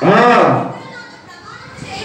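Speech: a man's voice preaching through a microphone and PA in a hall, a short loud exclaimed phrase at the start, then a pause.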